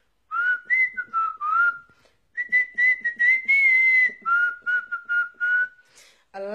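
A woman whistling a short tune through pursed lips: a few quick gliding notes, then a longer wavering note, then a run of short repeated lower notes, with breath heard between them.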